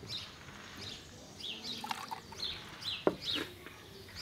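Songbirds chirping in quick, short falling notes throughout, with a single sharp knock about three seconds in.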